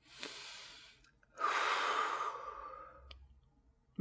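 A woman draws a breath, then lets out one long sigh that fades away.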